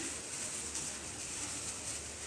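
Soft, steady gritty rustle of plastic-gloved hands rubbing raw green mango pieces in a coarse salt and turmeric mix.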